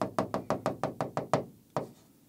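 A pen tapping rapidly on the glass of a large touchscreen whiteboard while it draws a dashed line, about seven or eight taps a second, stopping with one last tap near the end.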